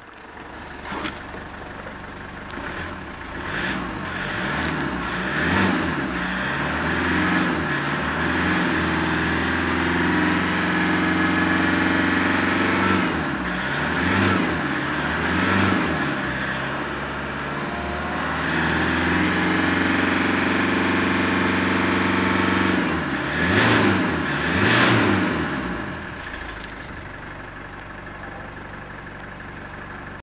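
2007 Ford Ranger 3.0-litre four-cylinder turbo-diesel engine running while the vehicle stands still. It is revved up and down several times, held at about 2000 rpm for a stretch, then settles back to idle near the end.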